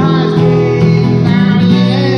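Acoustic guitar strummed with a voice singing along.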